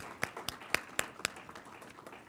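Small audience applauding, with distinct individual claps standing out; the applause dies away near the end.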